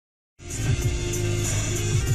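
Funky music from a car radio, heard inside the car cabin, cutting in about half a second in with a deep, sliding bass line and a steady beat.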